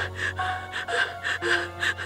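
A young woman crying, drawing short, shaky gasping breaths about four times a second, over a low steady drone.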